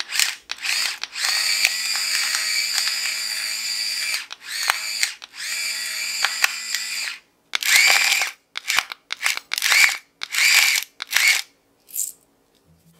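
The motor of a Riviela rechargeable electric grinder whines as it grinds black peppercorns. It runs twice for a few seconds at a time, then in a series of short bursts, each starting with a rising whine as the motor spins up.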